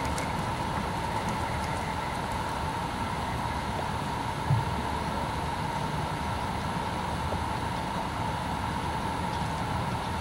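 Steady low rumble and hiss of outdoor background noise, with a faint steady hum running through it and one thump about four and a half seconds in.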